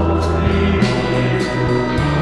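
Psychedelic rock music: sustained chords over a bass line that changes note, with sharp cymbal-like strikes about every half second.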